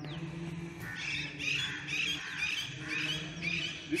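Birds calling outdoors: a run of short, repeated chirps, about two to three a second, starting about a second in, over a low steady hum.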